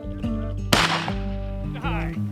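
A single shotgun shot fired at a flushing pheasant, sharp and loud, about three-quarters of a second in, over steady background music.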